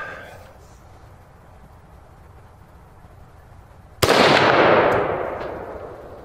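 A single shot from a Ruger SFAR semi-automatic rifle in .308 with a muzzle brake, about four seconds in, its report echoing and fading away over about two seconds.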